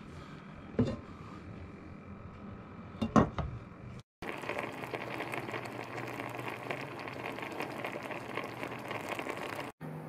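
Dolmades simmering in water, lemon juice and olive oil in a stainless steel pot: a steady bubbling and fizzing that starts after a brief break about four seconds in. Before it, low room sound with two short knocks, the louder about three seconds in.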